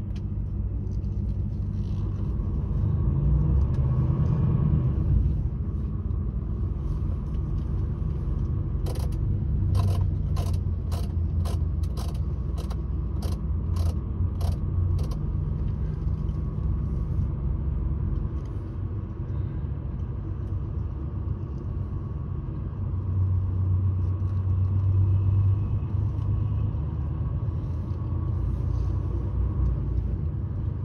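Low, steady engine and road rumble of a vehicle heard from inside the cab, swelling a little twice. In the middle a run of evenly spaced ticks, about two a second, goes on for some six seconds.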